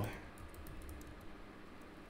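Computer keyboard typing: a few faint keystrokes.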